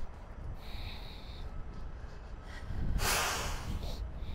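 A person's sharp exhale or snort close to the microphone about three seconds in, heard over a steady low rumble.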